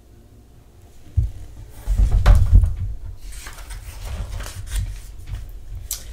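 A large hardcover picture book being handled. A sudden thump comes about a second in, then heavier knocks as it is set on a wooden book stand, followed by rustling as its pages are turned.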